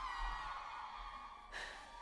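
Quiet opening of a live rock-band concert recording: sustained high tones that drift slowly in pitch, fading a little toward the end.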